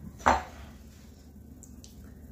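A ceramic bowl set down on a stone countertop with one sharp clack, followed by a couple of faint light clicks.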